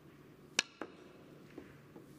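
Snooker cue tip striking the cue ball with a single sharp click, followed a fifth of a second later by a second, softer click of ball contact, and a faint knock about a second after that.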